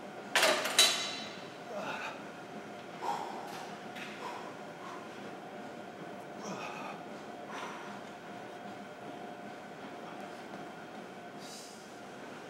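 A man breathing hard and grunting through bar dips, with two sharp forceful exhales about half a second in and fainter breaths every second or so after. A steady gym hum runs underneath.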